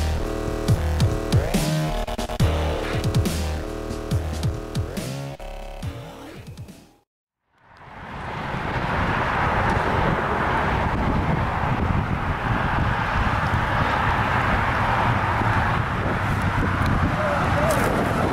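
Electronic dance music with a heavy beat fades out about seven seconds in, and there is a moment of silence. Then comes a steady rushing noise of a line of cars driving past on a road: tyre and engine sound.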